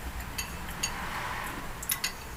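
Four light clicks of cutlery against a dish during eating, spread over about two seconds.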